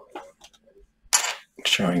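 Faint light clicks and taps of small plastic parts handled on a desk: the opened HOBO MX pendant logger and its twist-off back cap being set down. A short hiss follows about a second in.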